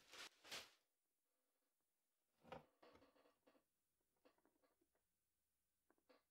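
Near silence, with a few faint rustles of packing paper and cardboard: two in the first second and one about two and a half seconds in.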